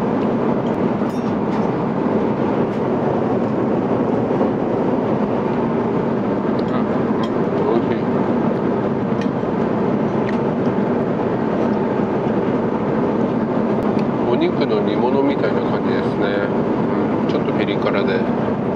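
Steady cabin roar of an Airbus A350-900 airliner in flight, with a few light clicks of a fork on tableware.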